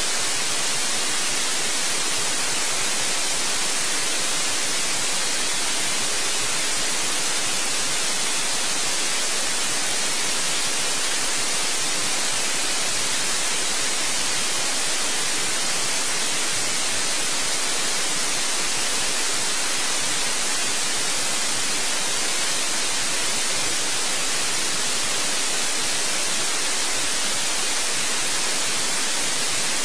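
Steady white-noise hiss, loud and unchanging, with no other sound.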